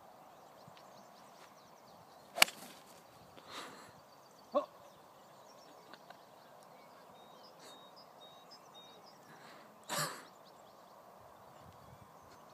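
A golf iron striking a ball off the tee: one sharp crack about two and a half seconds in, the loudest sound. After it, a few softer short noises in a quiet outdoor background, the largest about ten seconds in.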